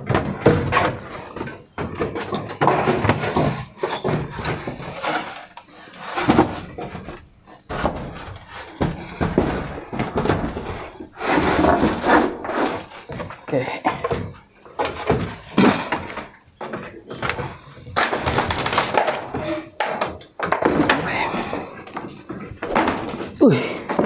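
Wooden ceiling hatch being pushed and worked open by hand: repeated knocks, thunks and scraping of loose boards in a cramped room.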